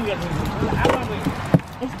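Handling and movement noise at an open car door as someone climbs out, with a single sharp knock about one and a half seconds in.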